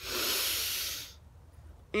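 A person taking one long sniff in through the nose, lasting about a second, as if breathing in the air to smell it.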